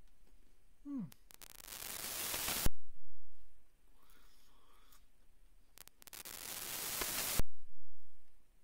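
Chewing a dry, brownie-like snack cake, with a short 'hmm' about a second in. Twice, a long hiss builds close to the microphone and cuts off with a click, like heavy nose breathing while chewing.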